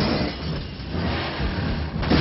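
Dense action-film sound mix of a speeding armoured car: heavy vehicle noise that eases for a moment about half a second in, then swells again.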